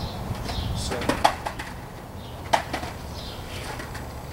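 Skateboard hitting the pavement with two sharp clacks about a second and a half apart, over a steady low rumble, with birds chirping.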